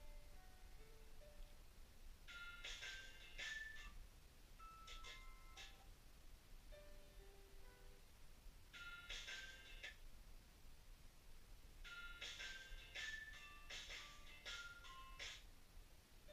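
Faint music playing from a digital photo frame's small built-in speaker: sparse single notes, with several short runs of higher notes.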